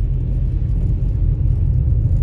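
Steady low rumble of a car driving, heard from inside the cabin: the engine and the tyres on a wet, snowy road.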